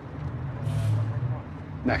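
A vehicle going by: a low rumble that swells and fades over about a second and a half, with a brief hiss at its loudest.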